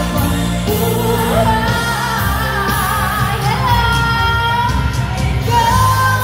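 Live pop music from a concert stage: a singer holds long, wavering notes over the band's steady low backing, heard from within the crowd in a large hall.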